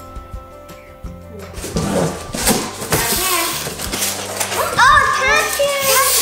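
Background music, then a rustle of paper and cardboard as a packet is pulled from a box, and children's excited voices getting louder in the second half.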